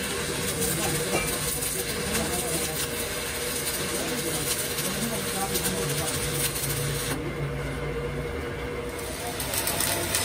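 Electric arc welding on steel axle parts: a steady crackle and sputter of the arc over a constant hum. The crackle thins out for about two seconds near the end.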